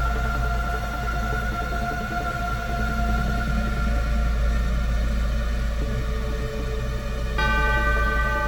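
Berlin School electronic synthesizer music: a deep bass drone under long held tones, with a new, brighter chord coming in abruptly about seven seconds in.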